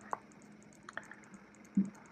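A few faint, short clicks from handling tools and materials at a fly-tying vise, over a low steady hum.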